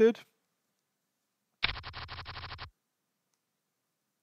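Online poker client's card-dealing sound effect: a quick run of about a dozen rapid card flicks lasting about a second, starting abruptly halfway through.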